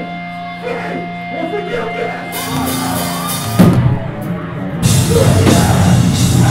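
Live hardcore band opening a song. Held ringing notes and a cymbal build-up lead to a loud hit about three and a half seconds in. Near five seconds the drums and distorted guitars crash in together at full volume.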